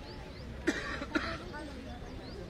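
Two sharp shouts of "kho!", about half a second apart, over a murmur of voices: the call a kho kho chaser gives when tapping a seated teammate to hand over the chase.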